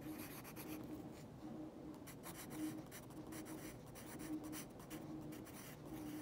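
Pencil writing by hand on a paper worksheet: a faint, irregular run of short strokes as words are written out.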